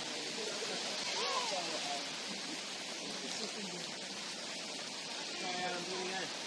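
Steady hiss of falling rain, with faint distant voices calling out about a second in and again near the end.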